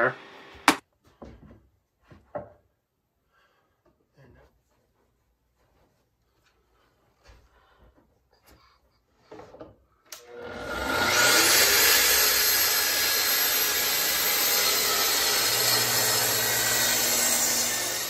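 Light scattered knocks and clicks of a square and guide rail being handled on a wooden panel, with one sharp click about a second in. About ten seconds in, a track saw starts up and cuts steadily along its guide rail through a glued-up pine tabletop, squaring the panel to size.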